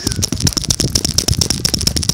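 Handling noise from a phone being rubbed and jostled in the hand: a loud, dense run of rapid crackling clicks as fingers scrape over the microphone.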